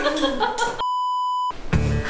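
A single steady electronic beep, a little over half a second long, about halfway in, with all other sound cut out under it: an edited-in censor bleep covering a spoken word. Voices and music run before it, and music with a beat comes back after it.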